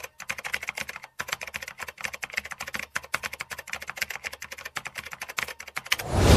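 Typing sound effect: rapid, irregular keystroke clicks, several a second, with short pauses near the start and about a second in, as text is typed out on screen.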